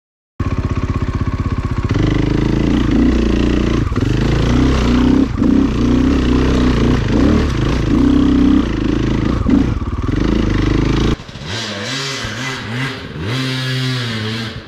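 KTM dirt bike engine running close by, its revs rising and falling as it climbs a trail. About eleven seconds in it cuts to a quieter, more distant dirt bike revving in short bursts.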